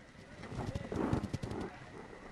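A quick run of sharp clicks and knocks close to the microphone, mixed with faint low voice sounds.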